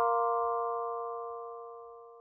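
The last chord of a short bell-like mallet logo jingle ringing out and fading away evenly, with no new notes struck.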